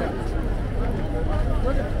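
Busy street ambience: voices of passers-by talking nearby over a steady low rumble of traffic.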